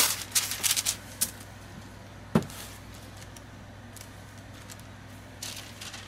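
Wax paper and paper labels being handled around a soap bar: rustling and light clicks at the start, then a single soft knock about two and a half seconds in, over a faint steady low hum, with a brief rustle near the end.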